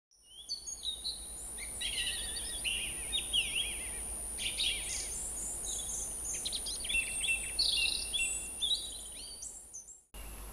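Song thrush singing: a run of varied, clear whistled phrases, some short notes repeated several times over.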